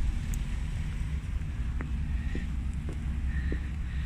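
Low wind rumble on the microphone outdoors, with a few faint clicks about half a second apart in the second half.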